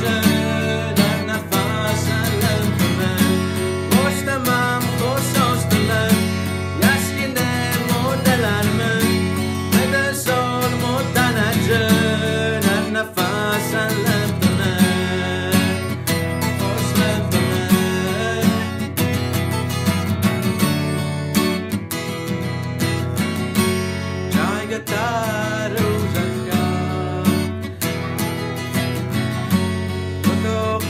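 A song with a man singing over strummed acoustic guitar and a steady low bass line.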